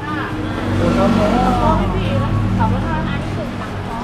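A motor vehicle's engine running nearby with a steady low hum that swells slightly about a second in, under people talking.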